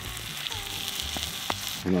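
A meat-and-potato casserole topped with cheese and barbecue sauce sizzling steadily in a skillet over a campfire, with a couple of sharp pops.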